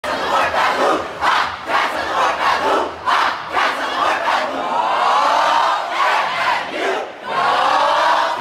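A swimming and diving team in a huddle shouting a cheer together. It starts as a quick run of short, rhythmic shouts, about two a second, then turns to longer held yells in the second half.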